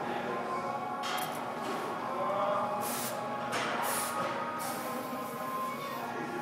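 Gym room ambience: faint background music and distant chatter, with a few short hissing sounds about one second in and again between three and four and a half seconds in.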